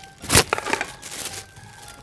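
Large round metal tray of kunafa being turned over with a plastic sheet: a loud knock about a third of a second in, then about a second of lighter clatter and rustling as it settles.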